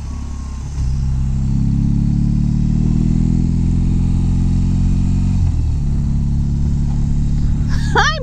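Harley-Davidson touring motorcycle's V-twin engine accelerating hard to change lanes and pass a car. The engine gets louder about a second in, and its pitch climbs steadily for several seconds before levelling off.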